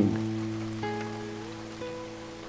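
Soft background music: low sustained notes dying away slowly, with higher held notes entering about a second in and again near the end, over a faint steady hiss.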